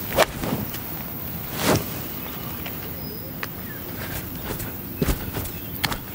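A 52-degree wedge striking a golf ball on a full approach swing: one sharp click just after the start, then a few faint knocks later.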